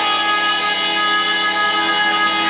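Live band music with long, steady held chords in a string-like sound from a keyboard synthesizer.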